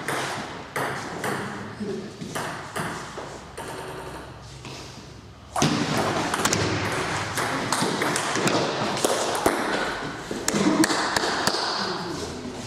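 Table tennis rally: the ball clicking off the rackets and the table in quick, irregular succession. The hits thin out a little before halfway, then a new rally starts with the background suddenly louder.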